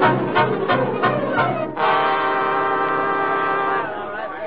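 Radio-drama orchestra playing a short music bridge that marks a scene change: a run of quick, detached notes, then a held chord from about two seconds in that breaks off just before the end.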